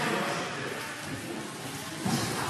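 Even, hiss-like background noise of a large hall, with faint indistinct voices.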